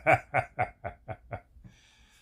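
A man laughing: a run of short 'ha' pulses, about five a second, growing fainter and dying away about a second and a half in.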